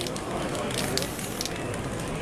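Aerosol spray-paint can hissing in several short bursts through the first second and a half, then stopping.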